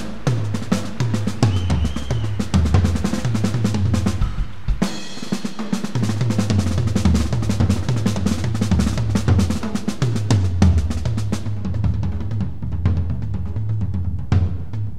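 Drum kit played fast and busy, with bass drum and snare hits packed closely together over a repeating low pattern. The low end drops out briefly about five seconds in, then the pattern picks up again.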